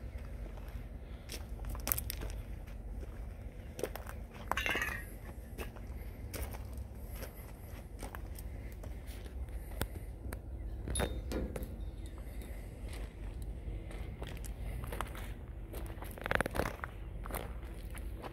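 Footsteps crunching on gravel, irregular short crunches and clicks over a steady low rumble.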